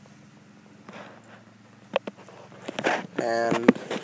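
Mostly quiet, with a few faint clicks, then a short stretch of a person's voice about three seconds in.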